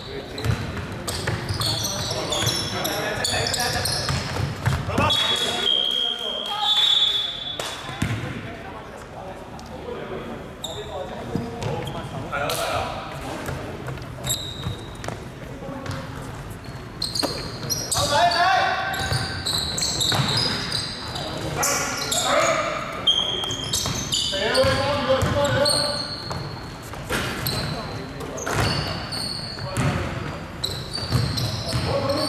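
A basketball bouncing on a wooden indoor court during a game, with players' voices calling out, in the reverberant sound of a large sports hall.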